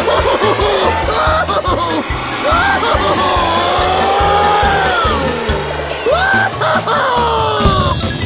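Loud, fast cartoon soundtrack music with a steady bass beat and swooping, sliding tones, over a rushing whoosh for a rocket's flight.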